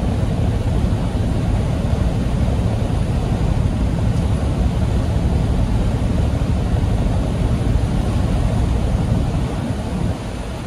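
Steady low drone inside a semi truck's cab at highway speed: engine and road noise running evenly.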